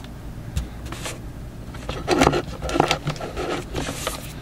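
Trading cards being handled off-camera: irregular rustling, small clicks and scrapes, with louder bursts of rustling from about halfway through.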